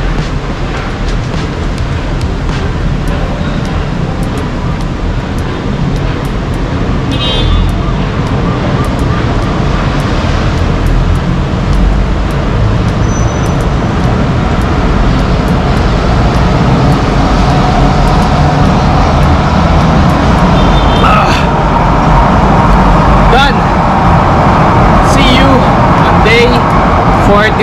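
Steady rumble of road traffic noise that slowly grows louder.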